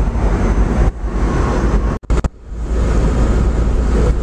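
Cabin noise of an electric-converted Porsche 914 on the move: a steady low rumble of road and wind noise. The sound drops out briefly about halfway through, then returns.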